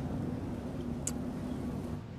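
Steady low rumble of distant traffic, with one short sharp click about a second in.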